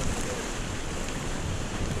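Whitewater rushing steadily around an inflatable raft running a rapid, with wind buffeting the camera's microphone.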